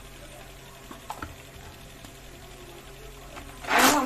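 A short, loud burst from an electric hand blender near the end, whipping curd and water so the raita has no lumps, after a couple of faint clicks.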